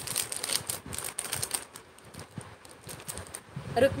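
Irregular light clicks and crinkling of plastic jewellery sachets being handled, busiest in the first two seconds. A woman starts speaking near the end.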